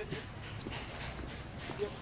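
Faint voices in the background, with a few scattered steps and scuffs of shoes on paving blocks.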